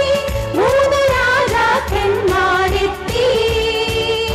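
Women's vocal group singing a Christmas song together into microphones over an accompaniment with a steady beat, holding a long note near the end.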